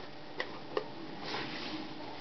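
Two light clicks from a vinyl LP being handled against its cardboard jacket, then a soft sliding rustle as the record goes back into its sleeve.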